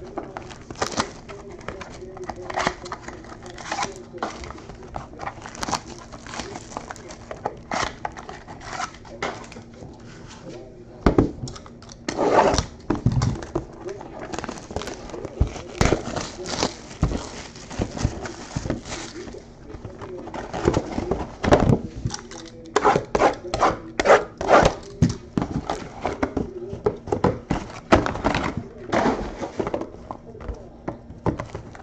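Foil card-pack wrappers being torn open and crinkled, and trading cards being handled, in irregular rustles and clicks, busier in the second half.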